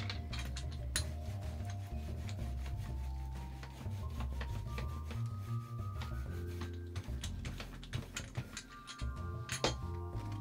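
Rubber brayer rolling back and forth over paper on a gel printing plate, a rubbing, rasping sound with many small clicks and a louder click near the end.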